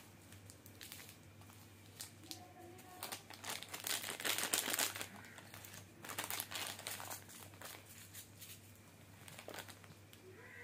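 Plastic chocolate-bar wrappers crinkling as they are handled and set down, in irregular bursts that are loudest about four to five seconds in.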